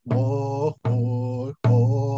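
A man sings a chanted hand-drum song in three held notes, each a little under a second long with short breaks between. A drum stroke marks the start of each note.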